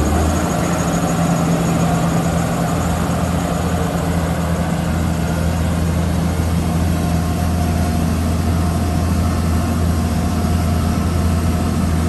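New Holland 8770 tractor's six-cylinder turbo diesel running at a steady speed, with no revving, as the tractor drives slowly away.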